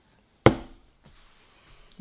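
A single sharp knock about half a second in, after a moment of dead silence, fading quickly into faint room noise.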